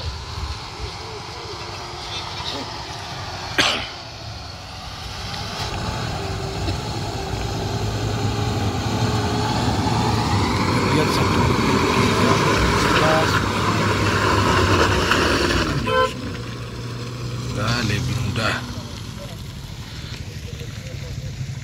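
A Toyota Kijang MPV's engine running as it drives slowly past over a muddy dirt road, growing louder to a peak around the middle and dropping away suddenly about sixteen seconds in.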